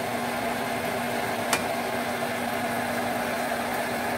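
Stir-fry of chicken and vegetables steadily sizzling and simmering in a pan, over a steady low hum, with one sharp click about a second and a half in.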